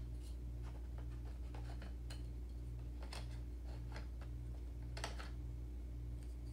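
Soft clicks and light rustling of small cardboard and plastic craft-kit parts being handled, with sharper clicks about three and five seconds in, over a steady low hum.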